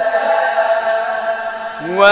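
A man's voice in melodic Quran recitation, holding one long drawn-out vowel with a slight waver. Near the end a new note starts and rises in pitch.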